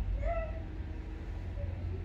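A single brief animal cry, rising and then held for under half a second, over a steady low hum.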